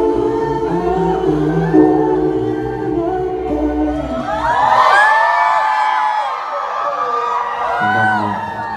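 Closing bars of a live R&B song, with sustained synth chords and bass, stopping about halfway through. Then the audience screams and cheers, many high voices overlapping.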